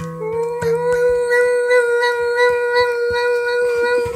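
Dog howling in response to handpan notes: one long call that rises slightly in pitch as it starts, then holds with a wavering tone, over the fading ring of handpan notes struck just before.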